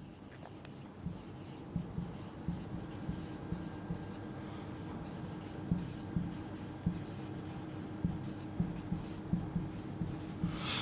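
Marker pen writing on a whiteboard: a run of short, irregular strokes and taps as a line of words is written out, over a faint steady hum.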